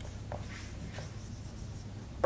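Marker pen writing on a whiteboard: faint short squeaks and rubs of the pen strokes, a few in quick succession, over a low steady room hum.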